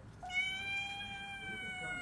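Joker Meow prank noisemaker playing a recorded cat meow: one long meow of nearly two seconds, its pitch almost level and dropping off at the end.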